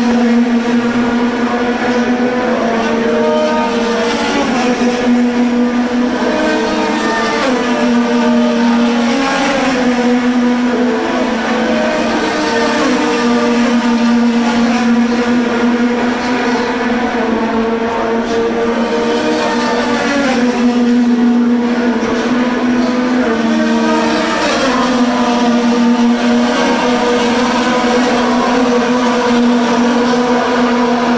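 IndyCar 2.2-litre twin-turbo V6 engines racing on a road course: a steady, loud drone of several cars at once, with overlapping engine notes rising and falling as the cars accelerate and slow through the corners.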